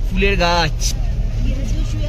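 Steady low engine and road rumble inside a moving Mahindra Bolero, with a voice speaking over it at the start and again faintly near the end.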